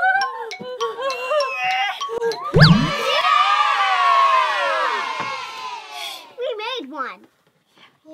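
A sudden thump about two and a half seconds in, then several children screaming and cheering together for about three seconds, with light background music underneath.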